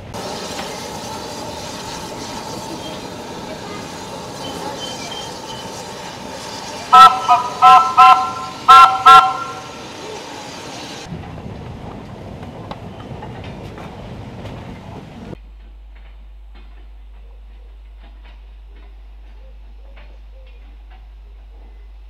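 A small locomotive running steadily, with a quick run of about six short, loud toots on its horn about seven seconds in. About fifteen seconds in, the sound cuts off suddenly to a faint low hum.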